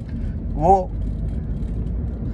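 Steady low rumble of a car heard from inside the cabin, with a single spoken word partway through.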